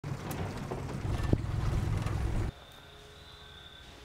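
Motorboat running underway: a low engine rumble with water and wind noise and a few sharp knocks. About two and a half seconds in it cuts off abruptly to a much quieter ambience with a faint steady high-pitched tone.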